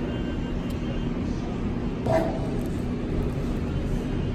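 Steady low background rumble of a restaurant dining room, with a faint constant hum, and one brief short sound about two seconds in.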